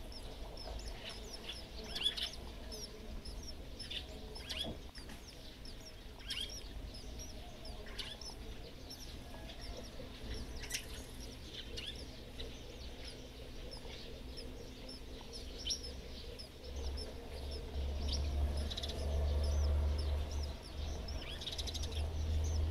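Sparrows chirping in a nestbox: a steady run of short, high, thin chirps with a few louder calls. A low rumble joins in over the last few seconds.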